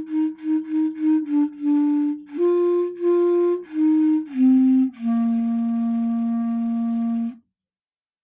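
Solo clarinet playing a melody: a quick run of short repeated notes, then a few longer notes that step down to a long held final note, which stops about seven seconds in.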